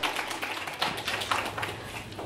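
Light applause from a small audience, dense at first and dying away.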